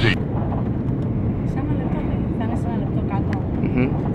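Steady cabin noise of an Airbus A330-300 on short final, engine and airflow noise heard from inside the passenger cabin, with a few faint voices over it.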